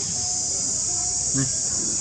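A steady, high-pitched insect chorus drones without a break, with a single soft knock about one and a half seconds in.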